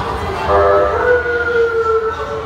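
A person's voice holding one long, high note that sets in about half a second in and drifts slightly downward in pitch.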